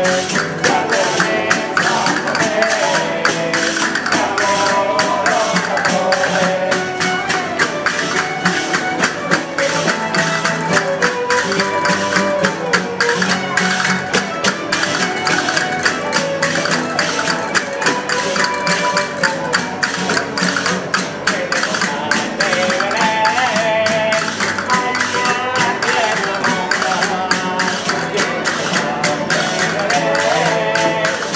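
Spanish folk cuadrilla playing a Christmas villancico: fiddles carry the tune over quick, rhythmic strumming of guitars and bandurrias, with a hand-held frame drum keeping the beat.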